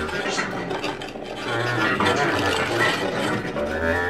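Free-improvised live music: a bass clarinet playing held low notes against laptop electronics, the mix carrying fragments that sound like a speaking voice.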